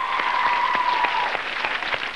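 Studio audience applauding and cheering, dense clapping with a high held cheer over it that fades after about a second.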